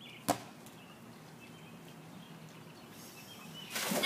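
Jumper splashing into a backyard swimming pool near the end, the water rushing up loudly. A single sharp knock comes shortly after the start, over a faint outdoor background.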